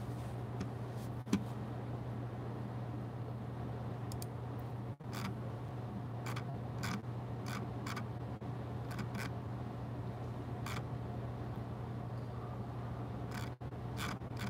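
Scattered single clicks from a computer mouse and keyboard, about a dozen at irregular intervals, over a steady low hum.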